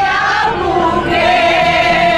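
A group of women singing a song together, mostly women's voices with some men's, holding long notes.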